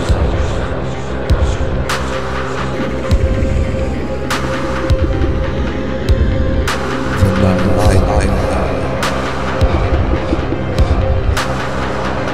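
Dark minimal-synth electronic music: steady droning synthesizer notes over a pulsing low drum-machine beat, with a sharp noisy hit about every two and a half seconds.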